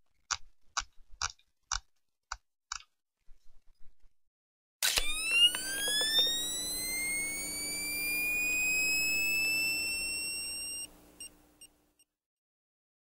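Six short clicks about half a second apart, then, about five seconds in, a loud whistle-like tone that slides up in pitch and then holds steady for some six seconds before cutting off abruptly.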